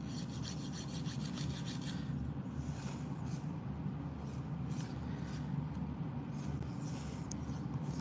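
A thin wooden nail file rasping on a fingernail, in quick even back-and-forth strokes for the first two seconds and then in scattered strokes, over the steady low hum of a nail dust collector fan.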